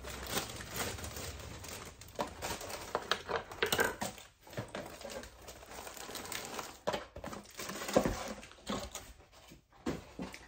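Plastic sleeve of vanilla wafers crinkling and rustling as it is cut open and handled, in a run of irregular crackles. A sharper knock comes about eight seconds in.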